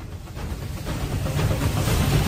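A rumbling hiss that swells steadily louder, an edited-in sound effect rather than anything on court.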